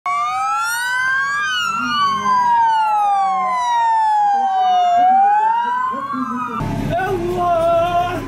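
Two or more police and gendarmerie vehicle sirens wailing together, each rising and falling slowly in pitch out of step with the others. About six and a half seconds in they cut off suddenly, giving way to a low vehicle rumble and voices.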